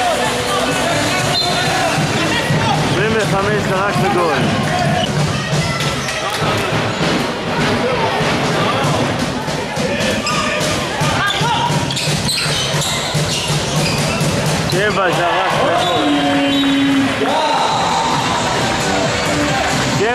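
A handball bouncing on the wooden floor of a sports hall with repeated sharp knocks, mixed with players' and spectators' shouts echoing in the hall.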